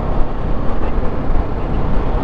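Sport motorcycle being ridden at road speed, heard from the rider's position: a loud, steady rush of wind and running noise with no distinct engine note.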